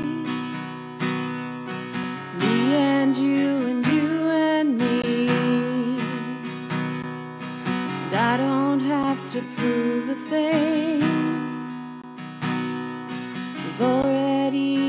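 A woman singing a slow worship song, accompanying herself on a strummed acoustic guitar. She holds long notes with vibrato, with short breaks between phrases.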